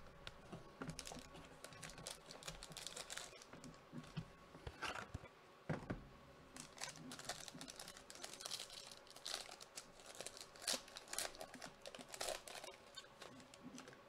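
Foil trading-card pack wrapper crinkling as it is handled and opened, with scattered short crackles and light taps from cards and cardboard. The sounds are faint.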